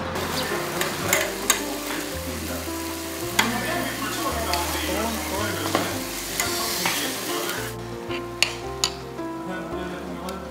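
Pots of stew simmering and sizzling on tabletop burners, with sharp clicks of chopsticks and spoons against the pots and bowls. The sizzling cuts off suddenly about three quarters of the way through, under soft background music.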